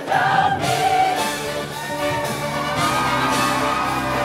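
A show choir singing in full ensemble over its live band, with voices holding long sustained notes in the second half.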